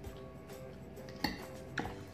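Soft background music with steady held notes, and a metal fork clinking against a plate twice, about midway and near the end.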